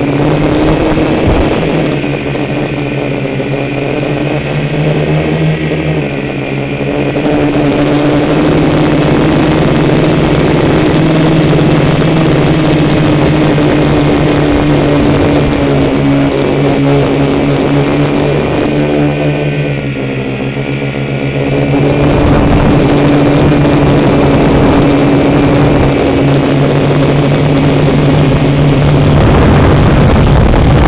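A tricopter's electric motors and propellers running, heard close up from its on-board camera: a steady buzz whose pitch drifts slightly up and down. From about two-thirds of the way through, a louder low rumble joins in.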